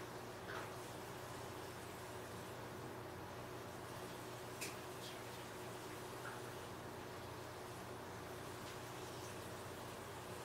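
Faint room tone: a steady low hum with a few soft, distant clicks.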